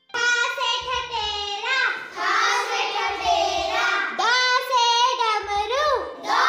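A child's voice singing a Hindi alphabet rhyme, with a short low bass note underneath about every two and a half seconds.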